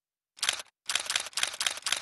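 Camera shutter firing in rapid continuous bursts, each a quick run of clicks with short gaps between, starting about a third of a second in after a moment of silence.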